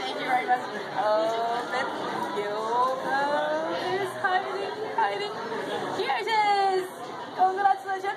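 Several people's voices talking over one another, unclear chatter that echoes in a busy indoor hall.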